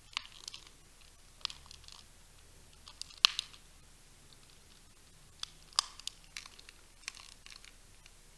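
Small handling noises in a quiet room: scattered sharp clicks and crinkles, about ten of them, with the loudest click a little over three seconds in.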